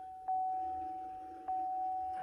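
C7 Corvette's dashboard warning chime: a single high electronic tone struck twice, about a second and a quarter apart, each strike ringing on and fading slowly.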